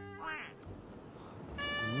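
Edited-in comic sound effects over background music: a short rising meow-like sound about a quarter second in, then a bright ringing sparkle tone near the end.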